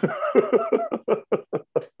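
A man laughing in a quick run of short pulses that slows and fades near the end.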